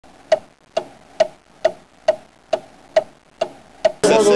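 A steady run of nine evenly spaced ticks, a little over two a second, each a short, sharp knock with a brief pitched ring.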